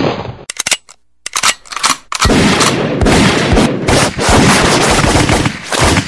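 Gunfire sound effect: a few separate shots in the first two seconds, then about four seconds of rapid, continuous fire.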